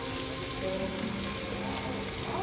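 Steady hiss of water spraying from a hose onto an elephant's back, with steady tones of background music underneath.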